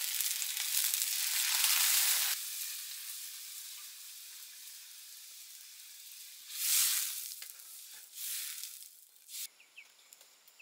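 Hot oil sizzling in a wok, loud at first and then dropping away suddenly about two and a half seconds in. A quieter sizzle follows, with two short louder bursts of sizzling near the end as a metal ladle works the oil.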